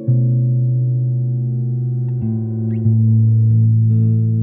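Instrumental background music of long held notes; the bass note moves to a new pitch about two seconds in and again shortly before three seconds.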